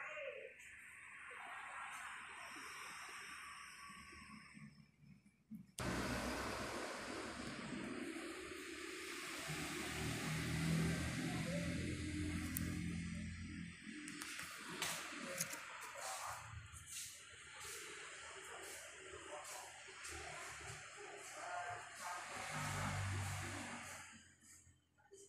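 Background music, starting suddenly about six seconds in after a stretch of faint noise.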